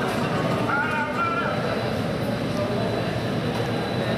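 A steady rumble from a Boeing 767 airliner's jet engines as it taxis in, muffled by the window glass, under indistinct voices in a crowded space.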